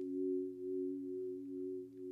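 Two sustained, nearly pure tones sounding together as a steady low musical drone, with a slight pulsing in level.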